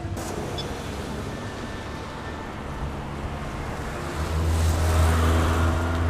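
City street traffic: steady noise of cars going by, with one vehicle's engine passing closer and louder from about four seconds in.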